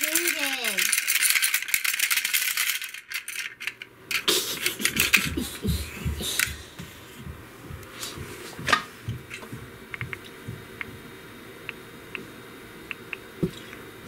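Rattling, clattering handling noise as a battery pack is taken off a hanging spring scale, followed by a few low knocks. Near the end come a dozen or so faint, light ticks, the sound of typing on a phone's touchscreen keyboard.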